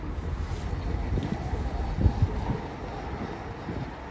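Wind buffeting the microphone: a low, rumbling noise that swells in a stronger gust about two seconds in.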